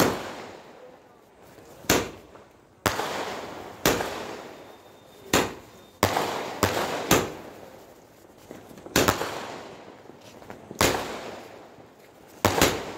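Multi-shot aerial firework cake (a 'fireshot') firing shell after shell: about ten sharp bangs at irregular intervals of roughly a second, each fading away over about a second.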